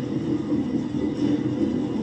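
A steady low rumble from the episode's soundtrack, even throughout with no distinct events.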